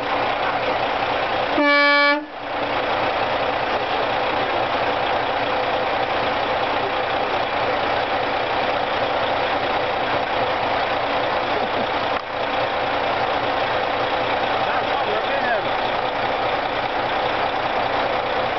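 A semi truck's cord-pulled air horn sounds one short single-pitched toot about two seconds in. A steady background noise continues throughout.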